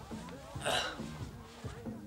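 Film soundtrack: dramatic score with a low, rhythmically repeating bass figure, and a single short, sharp noisy burst a little under a second in.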